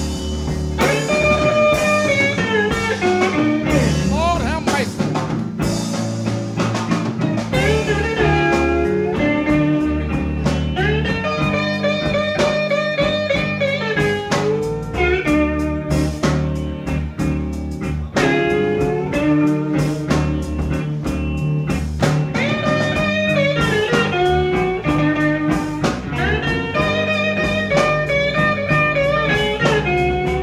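Live electric Chicago blues band playing an instrumental break: lead electric guitar with bending, gliding notes over bass and drums.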